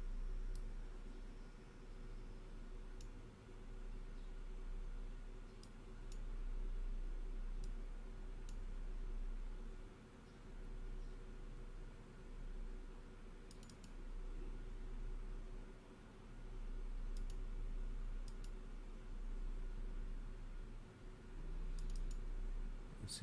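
Sparse computer mouse clicks, about nine single sharp clicks spread out, with a pair close together around the middle, over a steady low hum.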